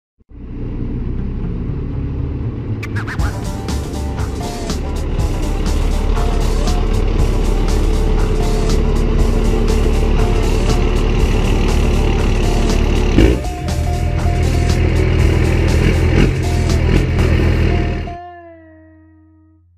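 The 5.9-litre inline-six 12-valve Cummins turbodiesel in a 1993 Dodge W250 running with a deep rumble and rapid clatter. Music joins about three seconds in, and there is a sharp loud burst about thirteen seconds in.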